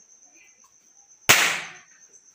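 A single loud firecracker bang about a second in, dying away over half a second.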